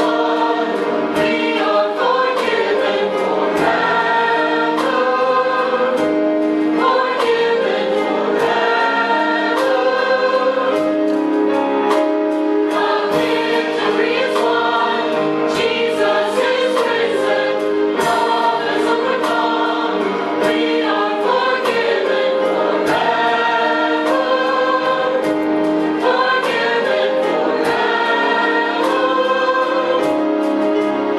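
Mixed church choir singing a gospel anthem with instrumental accompaniment, with regular percussive strikes through it.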